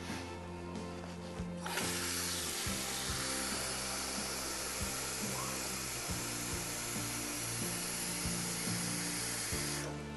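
Water running from a tap into a bowl: a steady hiss that starts about two seconds in and stops just before the end, over background music.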